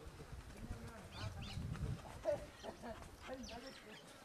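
Water buffalo walking over dry dirt ground, its hooves thudding softly, with birds chirping and people talking in the background.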